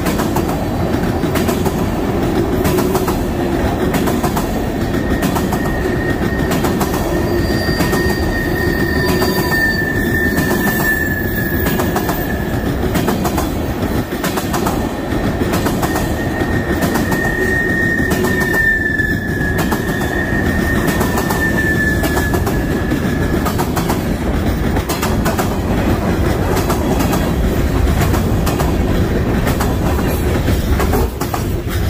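Norfolk Southern freight train's tank cars, then gondolas, rolling past close by: a loud steady rumble of steel wheels on rail with irregular clicking from the rail joints. A high, wavering metallic squeal from the wheels rises out of it twice, each time lasting several seconds.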